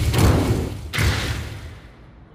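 Deep, heavy thuds, one at the start and another about a second in, each with a long fading tail: the sound effect of banks of lights switching on one after another.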